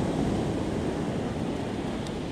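Ocean surf breaking and washing up a sandy beach, a steady rushing noise, with wind buffeting the microphone.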